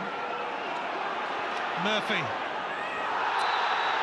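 Football stadium crowd noise, a steady roar under TV commentary, swelling about three seconds in as a challenge goes in.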